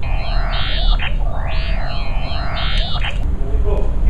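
Sensory substitution device turning a picture of a face into sound: an eerie sweep of many blended tones, in which height in the image becomes pitch and brightness becomes loudness, played twice, each scan about a second and a half long. The sound encodes a surprised face with a round, open mouth.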